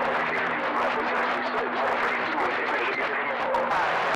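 CB radio receiver putting out heavy static with a weak, garbled voice buried in the noise and a steady low hum under it; the operator calls it real bad bleed over.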